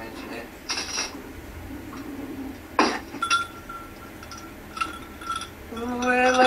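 A metal spoon clinking against a drinking glass while a drink is stirred: a few separate clinks, the loudest about three seconds in, with the glass ringing faintly after the later ones.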